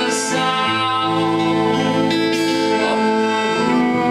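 Live band playing a slow, sustained instrumental passage of held chords; the bass note shifts about half a second in and the chord changes again near the end.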